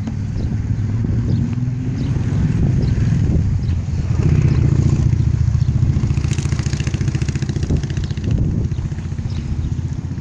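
A motor engine running steadily, getting louder about four seconds in and easing off again after about eight seconds.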